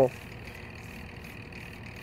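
Faint, steady background noise with no distinct events: a pause between spoken sentences.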